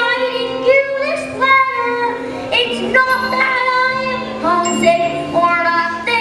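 A young girl singing a solo song into a handheld microphone, with held notes that move up and down in pitch.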